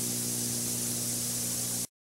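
Steady tape hiss with a low buzzing hum from a blank black video signal on a VHS recording, cutting off suddenly to dead silence just before the end.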